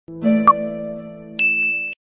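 Subscribe-animation sound effects: a held chime chord, a sharp click about half a second in, then a bright high ding about a second and a half in, the bell sound of the notification button being pressed. It all cuts off just before the narration.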